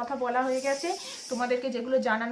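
A woman talking, with a brief hissing sound from about half a second to just past a second in.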